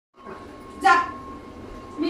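A single short, loud, pitched vocal cry about a second in, from either the German shepherd or the woman.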